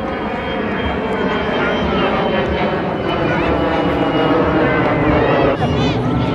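An airplane passing overhead, a steady engine drone with a high whine that slowly grows louder, over the chatter of a beach crowd.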